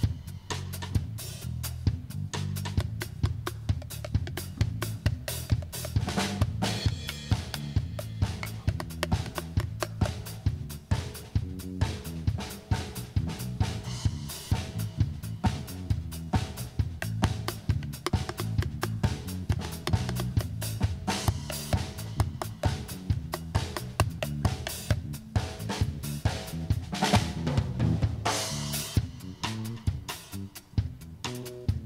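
Live band music: a steady drum groove of sharp, evenly spaced hits over an electric bass line.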